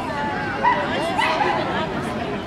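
A baby screaming in the background, a few short bending cries about halfway through, over the chatter of a crowd.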